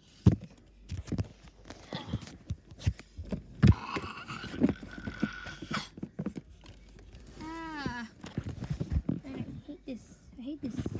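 Thin paperback picture books being handled and set down on a stack, giving irregular soft knocks and paper rustles. A short wordless vocal sound comes about three quarters of the way in.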